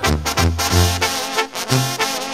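Mexican banda music in an instrumental break between sung lines: a brass section plays over a low bass line that moves about twice a second, with steady percussion.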